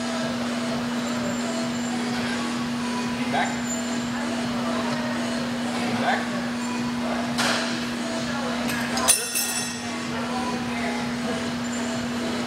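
Steady humming gym background noise, with a single sharp clack about nine seconds in.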